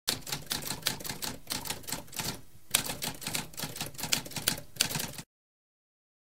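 Typewriter keys struck in a rapid run of clicks, with a brief pause about halfway through, cutting off a little after five seconds in.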